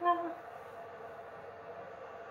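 A person's voice trailing off in the first half second, then quiet room sound with a faint steady background.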